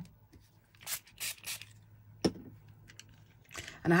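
Faint handling noises of craft supplies on a table: a few brief rustles about a second in, then a single sharp click a little after two seconds.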